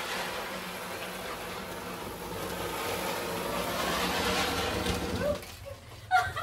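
Ground spinner firework (chakri) spinning on the floor, a steady hiss of burning powder that dies away about five seconds in as it burns out.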